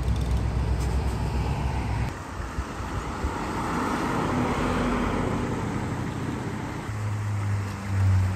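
Cars passing on a street. A classic Corvette's V8 rumbles low as it pulls away and fades after about two seconds. Then the tyre and engine sound of a car driving by rises and falls, and near the end a deep, steady engine note grows as a newer Corvette approaches.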